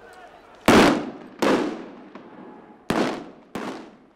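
Four loud blasts of stun grenades and tear-gas canisters going off in a city street, each echoing off the buildings and fading over about half a second. The last two come close together near the end.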